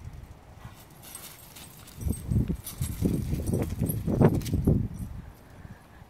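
Footsteps crunching on gravel, irregular and loudest from about two seconds in to near the end.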